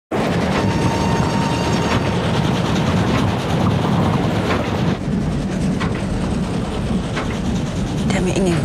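Passenger train running: a steady rumble with occasional clicks of the wheels over the rail joints, heard from an open carriage window with rushing wind.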